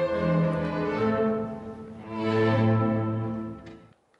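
Recorded orchestral music with bowed strings playing sustained chords. It swells to a held chord about two seconds in and ends just before the close.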